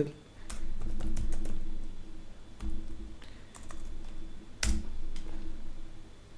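Computer keyboard typing: scattered individual keystrokes, with one louder key strike about four and a half seconds in, over a low steady hum.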